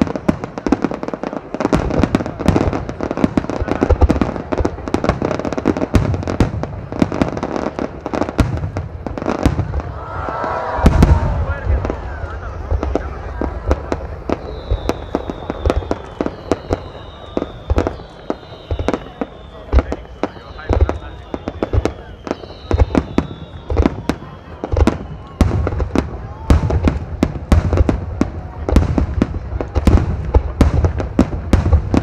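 Fireworks display: aerial shells bursting in rapid succession, a dense string of sharp bangs over deep booms, with the heaviest, loudest volley about a third of the way in.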